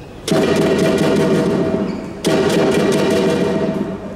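Lion dance percussion: drum, gong and cymbals played in fast, loud rolls, starting a moment in, breaking off briefly about two seconds in, then starting again.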